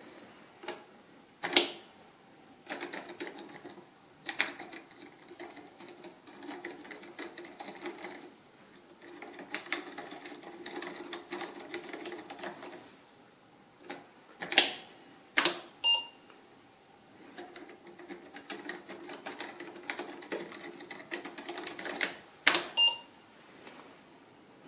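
Apple II J-Plus keyboard being typed on: runs of quick key clicks, broken by a few heavier single key strokes. Twice, near the middle and again near the end, a short beep comes from the computer's speaker, as when an error is reported.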